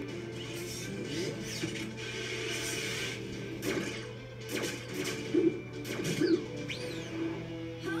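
Cartoon soundtrack played through a TV: background music with several sudden knocks and a few sliding whistle-like tones, the loudest knocks past the middle.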